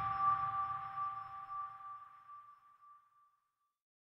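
The ringing end of a logo-reveal music sting: two steady high tones and a low rumble dying away over about three seconds.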